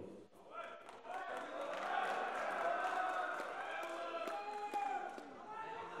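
Audience in a large hall: many voices talking and calling out at once, starting about a second in, with a few sharp knocks or claps.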